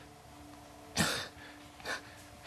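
Two sharp, cough-like bursts of breath from a young man, a strong one about a second in and a shorter one near the end, over a faint steady hum.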